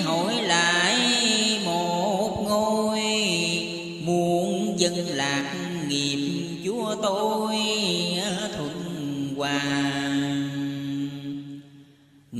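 A voice chanting Vietnamese Buddhist verse in a slow, drawn-out style, holding long notes that waver and bend in pitch. The sound drops away briefly near the end.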